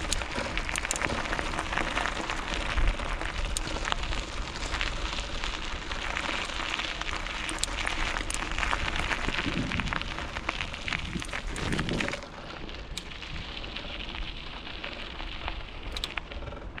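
Loose gravel crunching and crackling steadily under movement along a gravel track, dropping quieter about twelve seconds in.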